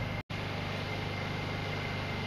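Steady low mechanical hum with a faint thin high whine. It drops out for an instant about a quarter second in, then resumes unchanged.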